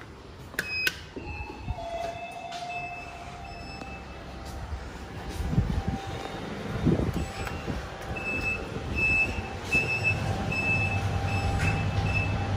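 IFE Metis-HS high-speed lift: a few clicks and short electronic beeps, then low thuds as the car doors shut. A run of high beeps about every half-second follows, and a steady low hum comes up near the end as the car starts to move.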